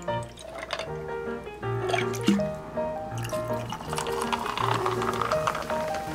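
Liquid poured over ice into a glass, first a peach vinegar drink concentrate, then carbonated water that foams and fizzes in the second half, strongest about four to five seconds in. Background music plays throughout and is the louder sound.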